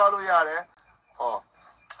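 A voice speaks for about half a second, and a short voiced sound follows about a second later, both over a steady high-pitched hiss.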